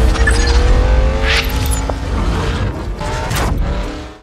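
Logo sting of race-car engine sound mixed with music: a loud, dense engine rumble with a tone slowly rising in pitch over the first second and a half, cutting off suddenly at the end.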